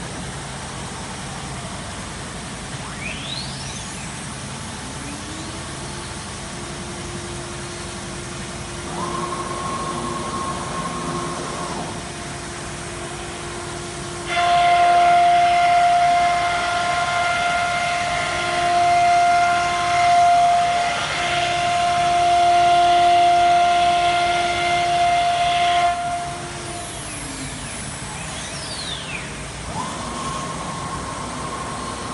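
Spindle of a linear ATC CNC router whining up to speed, then running at a steady pitch. For about twelve seconds in the middle it is much louder as it cuts the wood panel, and near the end it spins down with a falling whine.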